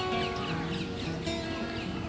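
Steel-string acoustic guitar playing on its own, chord notes ringing and changing every half second or so. Small birds chirp faintly behind it in quick short calls.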